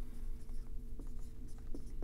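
Marker writing on a whiteboard: a string of short, faint scratching strokes.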